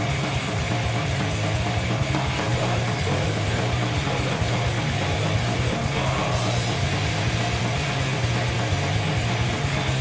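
Heavy metal band playing live: distorted electric guitars through Marshall amp stacks over fast, driving drums, a loud unbroken wall of sound.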